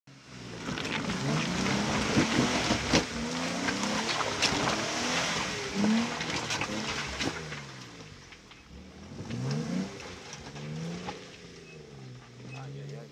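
Jeep Wrangler JK engine revving up and down again and again while the Jeep crawls over rocks, with sharp knocks and cracks of rock under the tyres. The sound fades after about eight seconds as the Jeep pulls away.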